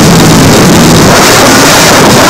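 Noise music from a live electronic set: a loud, dense wash of distorted noise with no beat or melody.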